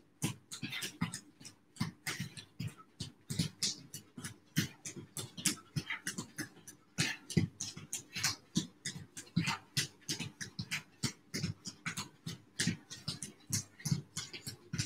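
Feet landing on gym floor mats as two people jog on the spot: a quick, uneven patter of soft thumps, several a second.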